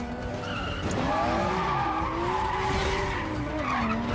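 Several race cars' engines revving, their pitches rising and falling over one another, with tyres skidding and squealing as the cars slide sideways through a turn.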